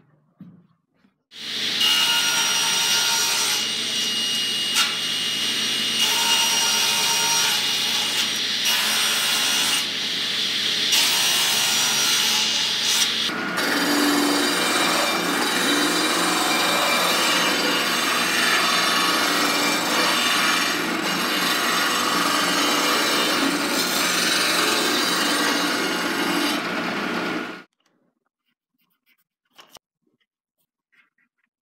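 Disc sander running with a wooden block pressed against the abrasive disc, grinding the wood down. The noise changes character about halfway through and stops suddenly near the end.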